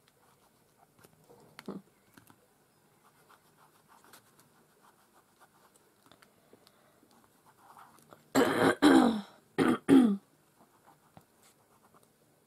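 A woman coughing, four loud coughs in two close pairs about two-thirds of the way in, over faint rustling of fingers on paper.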